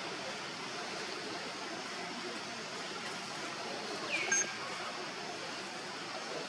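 Steady outdoor background hiss of a forest, with one short high call about four seconds in that slides down in pitch and then holds briefly.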